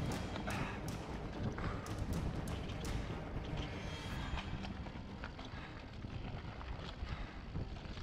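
Mountain bike rolling over a rocky dirt trail: tyres crunching over dirt and rock, with frequent sharp clacks and rattles from the bike as it hits the bumps, and wind rumbling on the microphone.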